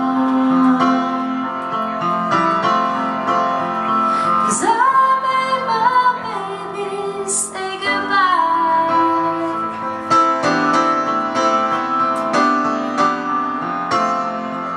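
Live grand piano playing slow chords and melody, with a woman's voice singing long notes that slide in pitch over it, about a third of the way in and again just past the middle.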